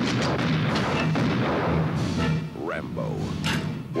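Film soundtrack of heavy gunfire and explosions over orchestral score. The battle noise is dense for the first half, then thins out.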